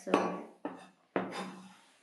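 Large kitchen knife chopping and scraping on a cutting board: three sharp strokes about half a second apart, the last trailing off in a scrape.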